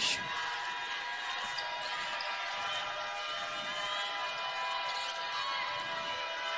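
Basketball being dribbled on a hardwood arena court, over the steady background din of the arena.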